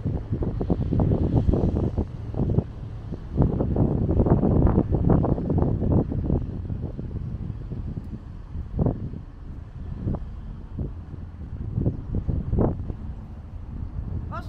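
Wind buffeting the microphone in uneven gusts, stronger in the first half, over the low running sound of a motor boat under way.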